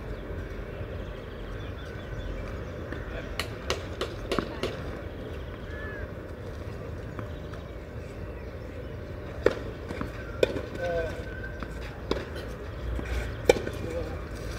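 Sharp knocks of a tennis ball on a clay court: a quick run of four about three to four seconds in, then single knocks about a second apart in the second half. Faint voices are heard under a steady outdoor background.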